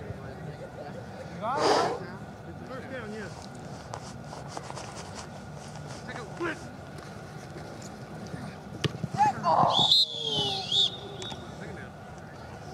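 Players' distant shouts across an open field during a flag football play, with a loud shout near the start and more shouting toward the end. A referee's whistle blows, warbling, about ten seconds in as the play ends.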